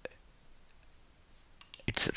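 A computer mouse click at the start, then a quiet pause of low room tone; a man's voice comes in near the end.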